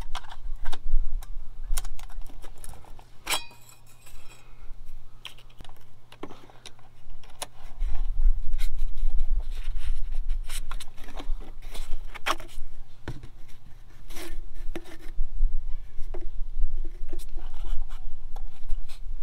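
Metal clicks and scrapes as a diesel air heater's corrugated metal exhaust pipe and its hose clamp are worked loose by hand. A steady low rumble runs underneath and grows louder about eight seconds in.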